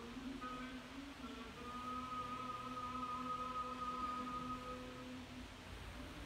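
Orthodox liturgical chant: a voice moves through a few short notes, then holds one long, steady note for about three seconds before stopping near the end.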